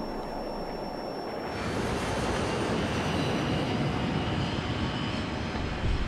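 Jet aircraft engine roar: a steady rushing noise that swells about a second and a half in and then holds. A thin, high steady whine sounds over it for the first second and a half.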